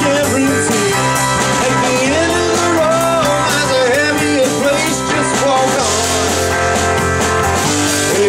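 Live rock band playing: electric guitar, electric bass and drum kit, with a lead line gliding up and down in pitch over steady bass and cymbals.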